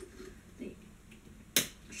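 A single sharp plastic click about one and a half seconds in, as a part is pushed onto the black plastic clip of a bendable mobile phone stand, with faint handling rustles before it.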